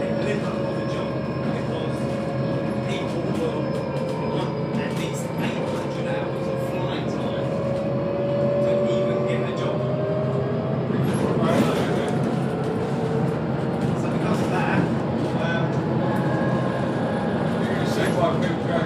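Inside a Volvo B7TL double-decker bus on the move: a steady drivetrain whine that drifts slowly down in pitch, over road noise and rattling of the body and fittings. About two-thirds of the way through, the whine breaks off in a louder rush of noise, then starts again.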